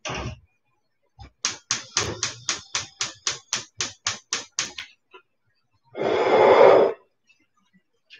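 Gas hob's spark igniter clicking rapidly, about four to five clicks a second for some three seconds, as a burner is lit. About a second of rushing noise follows near the end.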